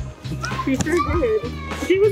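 A toddler's high-pitched voice and squeals, with adult voices, over background music with a steady bass beat.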